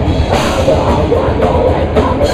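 Death metal band playing live, heard loud and close: heavily distorted electric guitar over dense, fast drumming, with a cymbal crash about a third of a second in.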